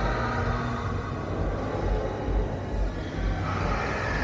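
Low, uneven rumbling and thudding from handling noise on a handheld camera's microphones as it is carried along.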